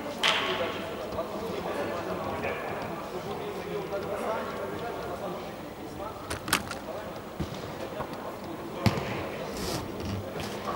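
Indistinct voices of players talking at a distance in a large indoor sports hall, with a few sharp knocks: one near the start, one about six and a half seconds in and one near the end.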